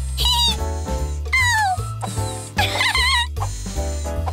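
Upbeat cartoon background music with a small cartoon creature's short high vocal calls that glide up and down in pitch, three times over the music.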